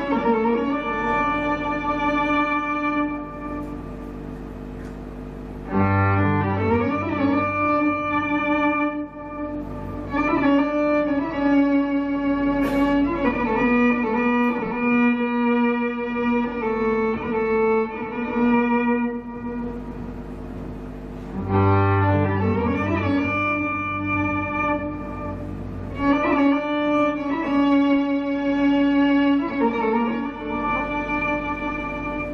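Amplified violin played live: long bowed notes held and layered over one another into a thick sustained drone. The sound thins out twice, and each time a deep low note swells back in under the held tones, about six seconds in and again about twenty-one seconds in.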